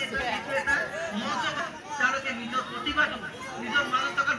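Several voices talking at once: a group of people chattering, with no single clear speaker.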